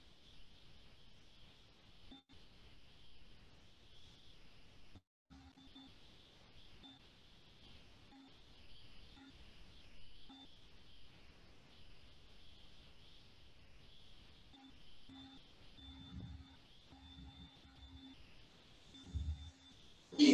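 Near silence: faint room tone, with faint, short, intermittent steady tones coming and going throughout.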